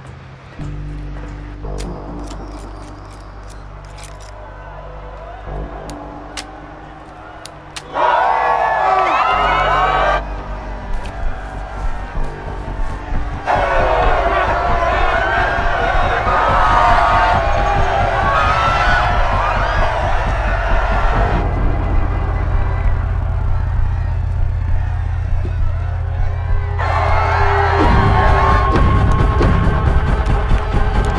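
Film score with low sustained tones. About eight seconds in, a crowd of fans starts screaming and cheering over the music, and the crowd noise runs on, rising and falling, to the end.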